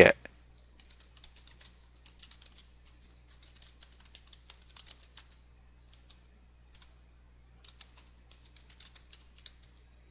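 Typing on a computer keyboard: quick runs of keystrokes, a pause of about two seconds in the middle broken by a couple of single taps, then another run near the end. A faint steady low hum lies underneath.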